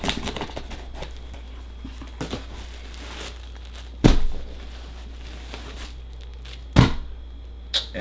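Cardboard shipping box being pulled and torn open, with packing tape crackling and packaging crinkling, then two sharp thumps, about four seconds and nearly seven seconds in.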